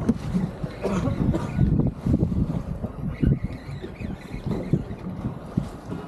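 Wind buffeting the microphone on a small open boat at sea: an irregular, gusty low rumble.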